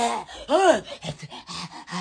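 A woman's wordless vocal exclamation, a short 'ooh' that rises and falls in pitch about half a second in, followed by softer broken sounds from her voice.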